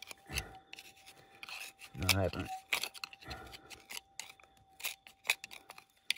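Thin metal pick scraping and prying at rock and packed soil in a bedrock crevice: a string of short scratches and clicks, with a faint steady tone behind.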